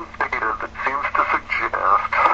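Speech only: a person talking continuously, with a faint steady hum underneath.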